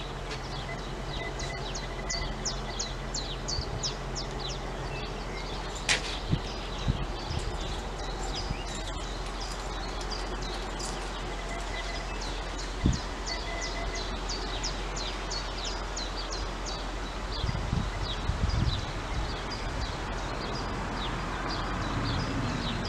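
Small songbirds singing: rapid series of short, high, falling chirps repeat again and again over a steady outdoor background. A few sharp clicks come a few seconds in, and there is a low rumbling near the end.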